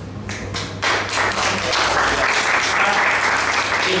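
Audience applauding: a few scattered claps at first, then steady applause from about a second in.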